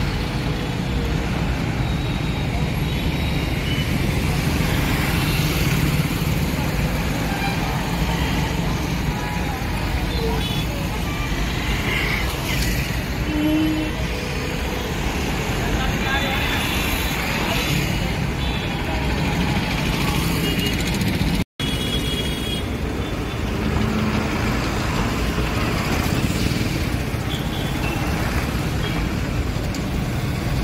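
Heavy road-junction traffic: cars, buses, auto-rickshaws and motorbikes passing with their engines running, and a few short horn toots. People's voices can be heard in the background.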